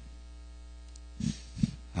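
Steady electrical mains hum, with two brief, soft low sounds a little past the middle.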